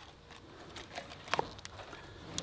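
Faint, scattered clicks and ticks of hands working a brushcutter's plastic mowing head, pulling the nylon trimmer line out to lengthen it. The clearest tick comes about halfway through.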